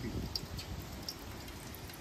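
Wood cooking fire burning, with faint scattered crackles over a low rumble of breeze.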